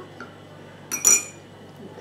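A single sharp clink of tableware, a hard cup, glass or cutlery being knocked or set down, about a second in, with a brief high ringing.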